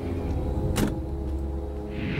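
Car door opening, with a single sharp latch click a little under a second in, over a low steady rumble and a dark held musical drone.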